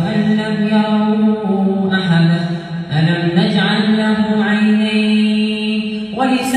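A man reciting the Quran in a slow melodic chant, holding each syllable as a long note. The pitch dips about two seconds in and rises again a second later.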